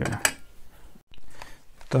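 Faint handling clicks and rustling, with one sharp click shortly after the start, broken by a moment of dead silence about a second in.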